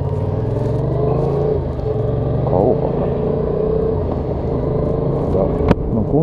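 Yamaha XSR700's 689 cc parallel-twin engine pulling away from a stop and accelerating, with a brief dip in revs about two and a half seconds in. A sharp click comes near the end.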